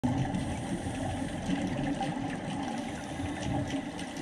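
Underwater ambience picked up by a diver's camera: an uneven, low water rush with faint scattered ticks.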